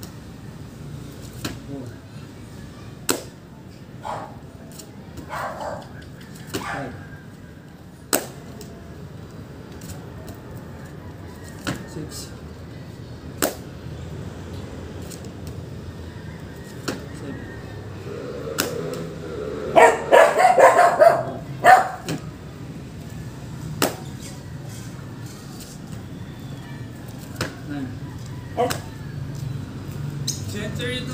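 Burpee workout on a mat: scattered sharp slaps and knocks from hands and feet landing, with a loud burst of pitched calls about twenty seconds in.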